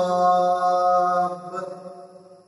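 A man's voice reciting the Quran in melodic chant, holding one long steady note at the end of a verse that fades out over the last half second or so.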